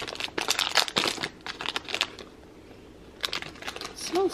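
Protein bar wrapper being opened by hand: a run of quick crinkles and rustles, a quieter pause of about a second past the middle, then more crinkling near the end.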